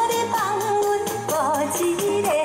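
A drum kit played live along with a backing track of a Taiwanese pop song. A steady drum beat runs under a held, wavering melody line.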